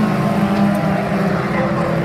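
Junior sedan race cars running at speed in a pack, engines held at steady high revs, the engine note dipping slightly in pitch about halfway through as cars pass.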